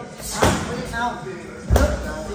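Two strikes landing on Muay Thai pads held by a trainer, a little over a second apart, the second the louder.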